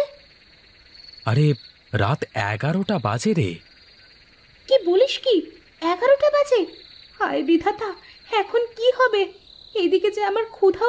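A steady, high cricket trill runs throughout as night-time ambience. Louder, short voice-like calls that rise and fall in pitch come and go over it.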